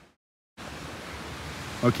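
Steady outdoor hiss of wind and distant surf from the sea, broken near the start by half a second of dead silence at an edit; a man's voice comes in near the end.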